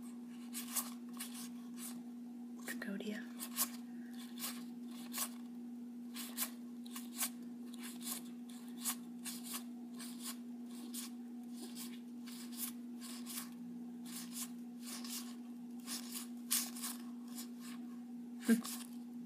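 Yu-Gi-Oh! trading cards being flipped through by hand, each card slid off the next with a short sharp flick, roughly one or two a second, over a steady low hum.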